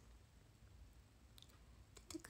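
Near silence broken by a few faint clicks, fingernail taps on a smartphone touchscreen.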